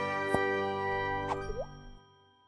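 Short musical outro jingle: held notes ringing out and fading away. A sharp click comes early, and near the end a quick downward pitch slide and an upward one give a cartoon-like plop before the sound dies out.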